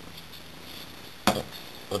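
Steady low hiss of room tone, broken about a second and a quarter in by a single short, sharp knock.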